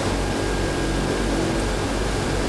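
Steady loud hiss with a low hum underneath, the background noise of the microphone and sound system.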